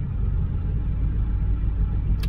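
Steady low rumble of a vehicle engine idling, heard from inside the cab.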